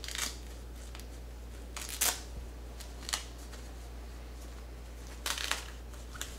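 Cloth diaper cover and insert being handled: a few short fabric rustles spread across the moment, the loudest about two seconds in and near the end, with a steady low hum underneath.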